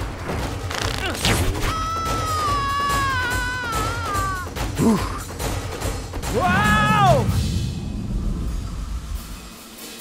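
Animated action-film soundtrack: an orchestral score under fight impacts, with a long high cry that falls slowly in pitch, then shorter shouts.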